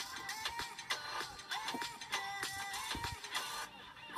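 Background music playing, with light clicks and rattles of small objects being handled.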